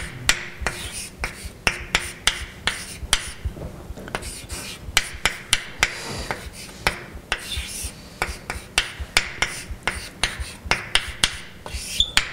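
Chalk writing on a blackboard: a quick, irregular run of sharp taps, several a second, as the chalk strikes the board, with short scratchy strokes between.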